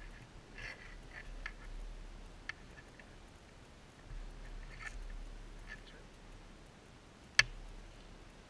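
Faint handling sounds of a steel wire cable being threaded into a metal cable-seal body and drawn through: scattered light scrapes and ticks, then one sharp click near the end.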